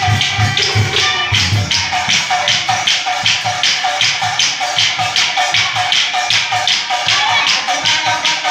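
Nagara naam ensemble playing an instrumental passage: nagara drums and hand cymbals beating a steady, fast rhythm of about three strokes a second, with no singing.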